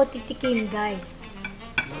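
A metal fork clinking and scraping against a ceramic bowl while noodles are twirled up, with a couple of sharp clinks: one shortly after the start and one near the end.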